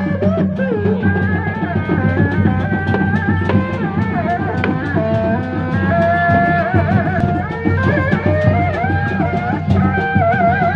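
Sundanese Reak ensemble playing live: a tarompet, the reedy double-reed shawm, winds an ornamented, wavering melody over steady, dense drumming.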